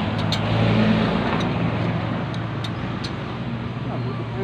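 A steady motor drone with a low hum, loudest in the first second and easing slightly after, with a few faint light clicks over it.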